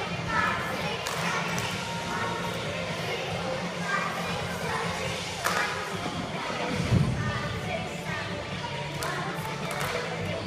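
Youth cheerleaders tumbling on a cheer mat: thuds of bodies landing, the loudest about seven seconds in, among voices and faint background music.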